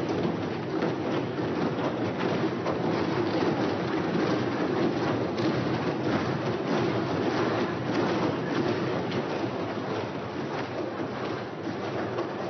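A chamber full of members applauding: a dense, steady clatter of many hands.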